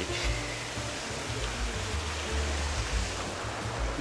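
Outdoor wind noise: irregular low rumbling from wind on the microphone over a steady hiss, with faint music underneath.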